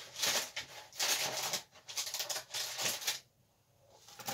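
Plastic model-kit sprues in clear plastic bags being handled and dropped into the kit box: the bags crinkle and the plastic parts rattle in about four short bursts, stopping a little after three seconds in.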